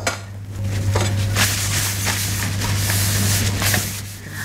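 Paper kitchen towel rubbing a non-stick frying pan dry: a rough wiping rustle in uneven strokes.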